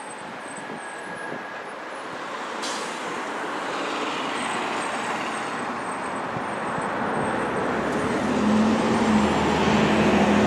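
Road traffic on a multi-lane street: tyre and engine noise that grows steadily louder, with a short hiss a few seconds in and a vehicle's engine hum rising near the end.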